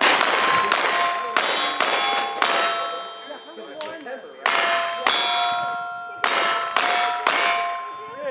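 Single-action revolver shots at steel plate targets, each crack followed by the ringing of the struck plate. Ten shots come in two strings of five, about half a second apart, with a pause of about two seconds between the strings.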